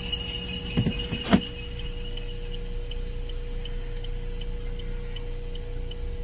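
A pause in the music: a steady hum with faint ticking about two or three times a second, and two short knocks about a second in.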